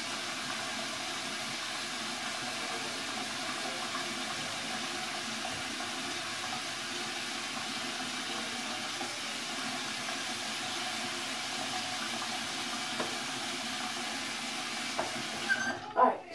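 Bathroom sink tap running steadily, water pouring into the basin, shut off just before the end.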